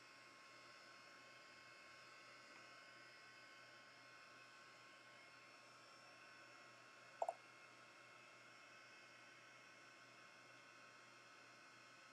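Faint, steady whir of a handheld craft heat tool running on its low setting, drying alcohol ink. A brief double tick about seven seconds in.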